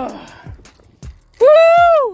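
A man's drawn-out, high-pitched yell about one and a half seconds in, the loudest sound, preceded by a few faint knocks.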